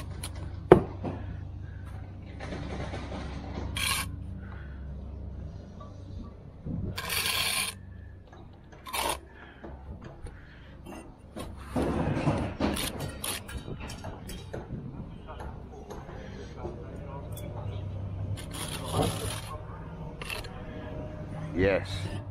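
Steel brick trowel scraping wet sand-and-cement mortar across a mortar board and buttering it onto bricks, in separate scraping strokes a few seconds apart. A sharp knock about a second in is the loudest sound, with a steady low hum underneath.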